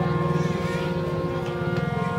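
Harmonium holding a steady chord between sung phrases of a kirtan.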